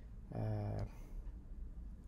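A man's drawn-out 'uh' hesitation, held on one steady pitch for about half a second, followed by a faint low room hum.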